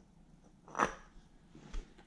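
Quiet handling sounds from a billet aluminium oil filter housing held against an engine block: a short scuff about a second in and a soft knock near the end.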